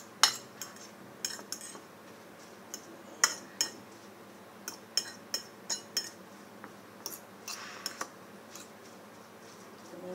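Spoon clinking and scraping against a ceramic plate while mixing cooked rice, a string of irregular sharp clinks that die away about eight seconds in.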